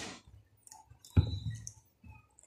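Close-up ASMR mouth sounds made with fingers at the lips: a noisy burst fading at the start, then a sharp click with a deep thud about a second in.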